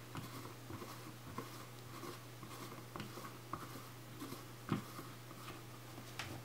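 Faint rubbing and a few small, sharp clicks as cotton-gloved hands twist a rubber lens-opener cup to screw a lens's name ring back in, over a faint steady hum.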